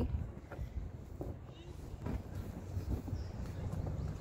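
Wind rumbling on the microphone outdoors, with a few faint short knocks scattered through.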